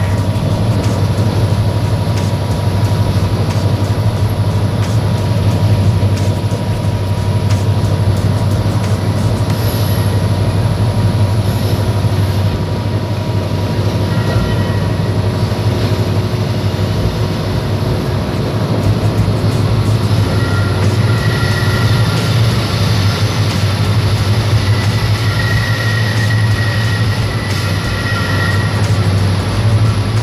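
Passenger train running along the line, heard from inside a coach: a steady loud rumble of wheels on rails. In the last third, high wheel squeal comes and goes several times.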